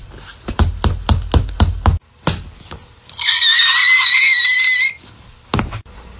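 Rapid blows landing on a rubber torso training dummy, about four thuds a second for two seconds, then a few more spaced hits. In the middle comes the loudest sound, a high-pitched wavering shriek lasting nearly two seconds.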